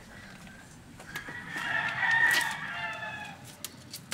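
A rooster crowing once: one drawn-out call that begins about a second in, swells, then fades over about two seconds.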